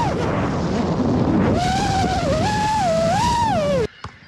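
Brushless motors of an iFlight Titan DC5 6S FPV quadcopter whining in flight over a steady rush of noise, the pitch rising and falling with throttle. The whine fades for about a second and a half near the start, then returns and wavers. This is the quad before it was tuned.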